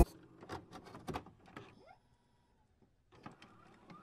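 Quiet room tone broken by a few faint, short clicks and rustles, the loudest about a second in.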